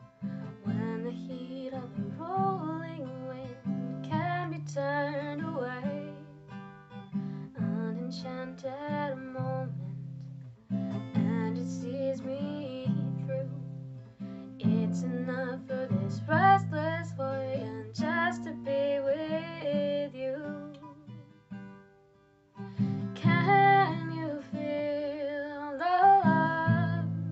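A woman singing a slow ballad to her own strummed acoustic guitar, which is capoed. Voice and guitar drop away briefly about 22 seconds in, then resume.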